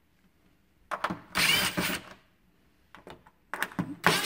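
Cordless power driver with a quarter-inch socket bit running in two short bursts, about a second in and again near the end, backing the screws out of a refrigerator's sheet-metal rear access panel, with a few light clicks between the bursts.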